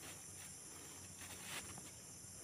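Faint, steady high-pitched insect chorus, with a few soft rustles of movement through dry grass.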